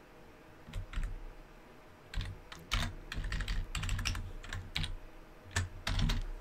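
Typing on a computer keyboard: a couple of keystrokes about a second in, then a quicker run of keystrokes through the second half.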